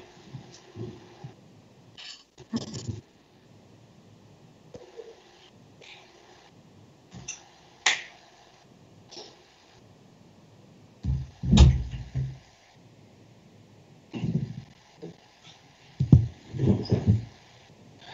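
Scattered faint clicks and knocks and a few brief muffled bumps over an online meeting's open microphones, the loudest a muffled bump about eleven and a half seconds in.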